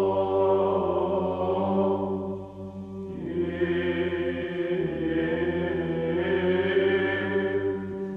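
Slow chanted vocal music, voices holding long notes over a steady low drone, with a short break in the chant about two and a half seconds in before it resumes.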